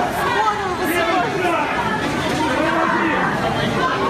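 Several people talking at once on a metro platform: overlapping, indistinct voices echoing in the hall.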